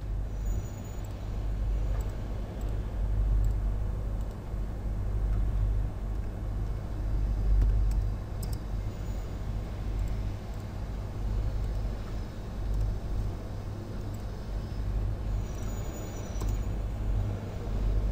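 Steady low rumble of background noise with a few faint clicks.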